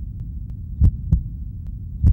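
Heartbeat sound effect: a double low thump, lub-dub, about a second in, with the next beat starting at the very end, over a steady low hum.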